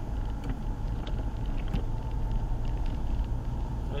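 Car driving on a wet road, heard from inside the cabin: a steady low rumble of engine and tyres, with a few faint ticks.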